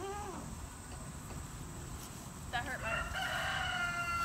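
A long drawn-out animal call: it begins about two and a half seconds in with a short rise and then holds one steady pitch to the end.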